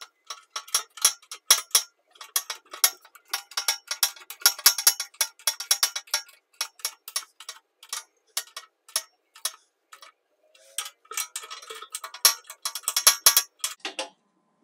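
Socket ratchet clicking in quick runs of strokes while bolts on the steel beam are worked, with short pauses between runs.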